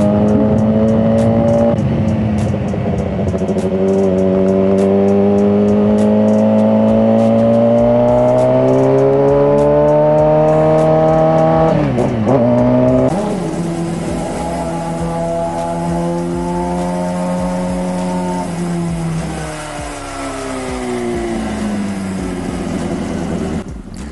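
Suzuki GSX-R sportbike's inline-four engine under way, its pitch climbing steadily as it accelerates, dipping sharply about halfway through, then holding steady before easing off and picking up again near the end. Wind noise runs under it.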